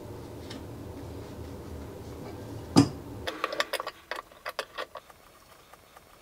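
Adjustable wrench working the metal nut of a braided supply hose on a sink's angle stop valve as it is loosened. There is a sharp metal knock about three seconds in, then a quick run of light metal ticks and clicks. A low steady hum underneath stops just after the knock.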